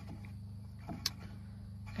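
An aluminium beer can being handled and turned on a wooden bench, with one light click about a second in, over a steady low hum.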